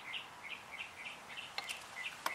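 A small bird chirping in the background, a quick series of short chirps, about three or four a second, with a couple of faint clicks near the end.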